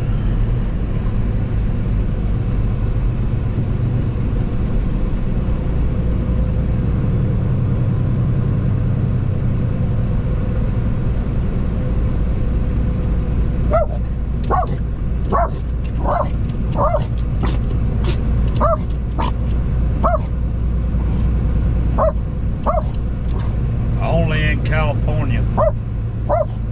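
Steady low drone of a truck engine and road noise inside the cab. About halfway through, a dog starts barking in quick, short barks that go on repeatedly.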